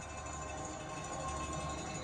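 Steady background sound of a football broadcast playing from a television, picked up in the room, with no commentary.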